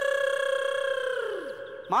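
A voice holding one long, high sung note. It stays level, then slides down and fades out about a second and a half in.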